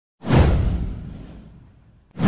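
A whoosh sound effect for an animated intro: a sudden rush with a deep low boom underneath, its hiss sweeping downward, fading out over about a second and a half.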